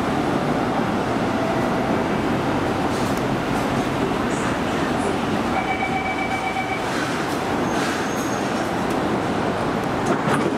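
Singapore North South Line MRT train running along an elevated viaduct: a steady rolling noise of wheels on track, with a brief faint whine a little past halfway.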